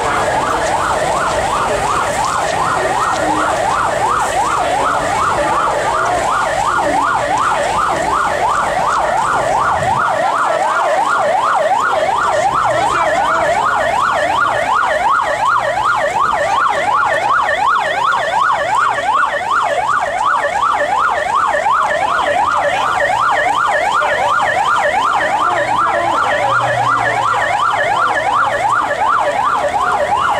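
Electronic siren on a vehicle sounding a fast yelp, its pitch sweeping rapidly up and down several times a second and going on steadily.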